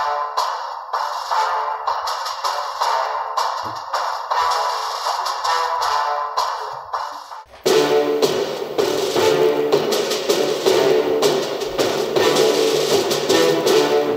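Music played through a small 4-ohm ported speaker, thin with no bass at all. About halfway through it switches to an 8-ohm, 5-watt woofer with a passive radiator, and the music comes through with much fuller low end, reaching far deeper.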